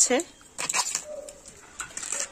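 Crisp snaps and rustling as the tough outer bracts of a banana flower are bent back and peeled off by hand, with a few sharp cracks about half a second in and again near the end.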